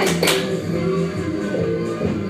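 Workout music with guitar playing steadily.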